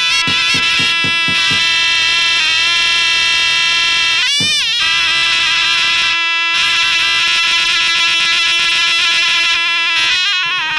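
Shrill surle (zurna) reed pipe playing a held, wavering melody, with a large lodra bass drum striking a quick run of about six beats in the first couple of seconds and one more beat midway.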